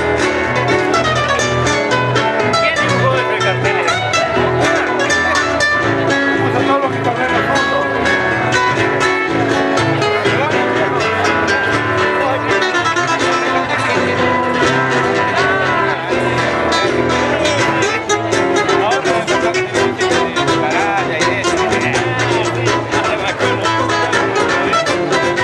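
Three acoustic guitars playing an instrumental piece together live through stage microphones: a dense, continuous run of plucked notes and chords at a steady level.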